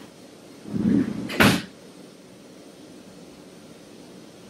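A wooden desk drawer sliding and knocking once against its stop, a sharp knock about one and a half seconds in.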